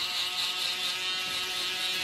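Cordless electric hair trimmer buzzing steadily as its blade runs along the nape of the neck.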